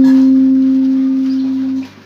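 A single guitar note from a lead solo line, held and left to ring, fading slowly, then stopped just before the end.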